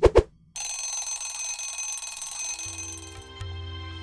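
Intro logo sting: two quick pops, then a bright, ringing shimmer of high tones that fades away over about three seconds. A low bass note of soft music comes in near the end.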